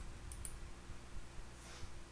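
A few faint, light clicks of a computer mouse in quick succession near the start, over a low steady hum.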